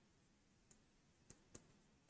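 Near silence: faint room tone with a few tiny clicks.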